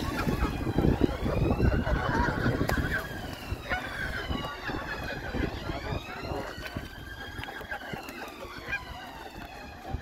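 Canada geese honking, the calls loudest in the first three seconds. Behind them a siren wails, its pitch rising and falling slowly over several seconds at a time.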